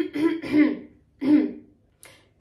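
A young woman coughing twice, throaty and muffled behind her hand.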